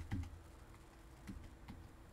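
A few scattered keystrokes on a computer keyboard, faint, with the firmest at the very start: a software command name being typed.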